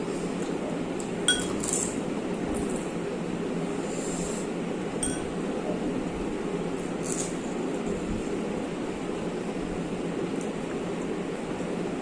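Crisp puffed pani puri shells being cracked open by fingers, with a few faint crackles and two short ringing clinks, about a second in and again about five seconds in, over a steady background hiss.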